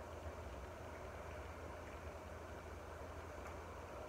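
Quiet room tone: a faint, steady low hum under a light hiss.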